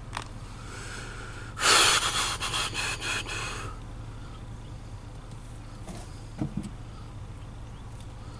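A loud breath close to the microphone, starting about one and a half seconds in and fading over about two seconds.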